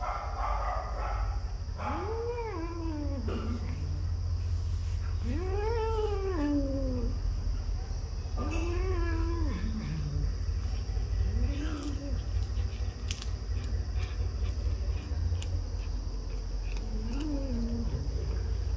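Domestic cat giving about five long, drawn-out calls, each rising and then falling in pitch over a second or so, spaced a few seconds apart, over a steady low hum.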